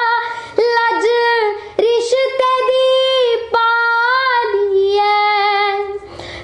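A young girl singing alone without accompaniment: long held notes with quick ornamental turns and bends, broken by short breaths between phrases.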